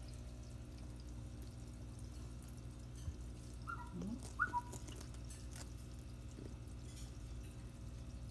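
A person whistles two short notes about halfway through, over a steady low hum.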